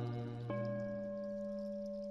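A Buddhist bowl bell struck once about half a second in, ringing on with several steady, slowly fading tones, while a deeper tone from an earlier strike dies away.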